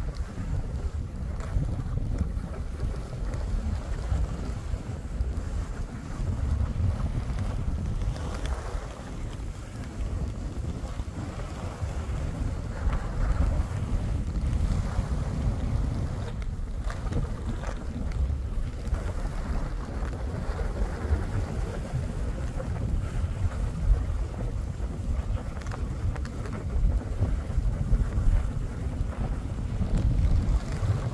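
Wind buffeting the microphone during a ski run through fresh powder, with the hiss of skis sliding through the snow coming and going.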